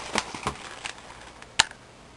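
Handling noise from a cardboard box of soap flakes being turned and held up: a few light knocks and rustles, then one sharp click about one and a half seconds in.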